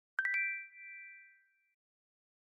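A three-note chime sound effect: three quick struck notes in rising pitch, one right after another, ringing on and fading out over about a second and a half.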